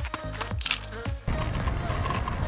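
Short musical sting with a few sharp clicks over a steady low hum, cutting off suddenly about a second and a quarter in. It gives way to a steady rush of wind on the microphone.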